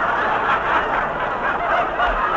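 Radio studio audience laughing, a long unbroken laugh from a large crowd heard through a narrow-band vintage broadcast recording.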